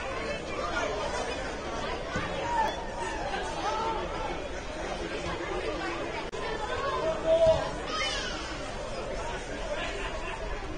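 Indistinct chatter of voices around a soccer pitch, with one louder call about seven seconds in.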